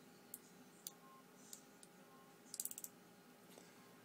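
Faint clicks from a handheld flashlight being worked by hand: a few single clicks, then a quick run of about half a dozen clicks a little past halfway.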